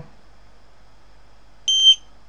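SparkFun Qwiic RFID reader's buzzer giving one short, high-pitched beep near the end as an RFID tag is read.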